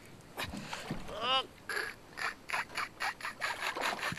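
Fishing reel clicking in a quick, even run of about four or five clicks a second while a hooked bass pulls against the line, after a short voiced exclamation about a second in.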